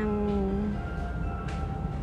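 A woman's drawn-out nasal "ng", held as she hesitates mid-sentence, sagging slightly in pitch and fading out just under a second in. Underneath is the steady background rumble of a busy supermarket with faint music.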